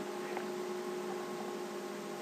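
Steady electrical hum, a few low tones held over a faint even hiss: the background noise of the recording setup.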